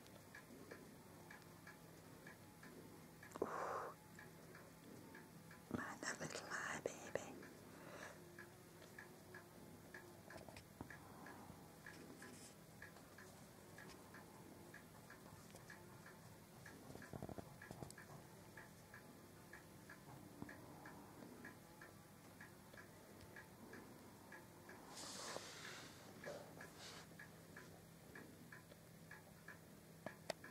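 Near silence with faint, evenly spaced ticking throughout and a few brief soft rustles, the clearest a few seconds in and near the end.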